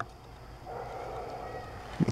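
Faint rustling of a toy car's cardboard-backed plastic blister pack being handled and tilted in the hand, starting about two-thirds of a second in.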